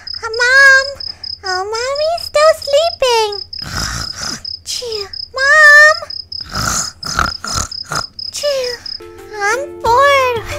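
Comic sleeping sound effects: noisy snore-like snorts alternating with short rising-and-falling whistled tones, over a steady, pulsing high-pitched tone that stops about nine seconds in.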